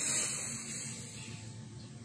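A man's long, deep in-breath: a hiss of air that slowly fades over about two seconds.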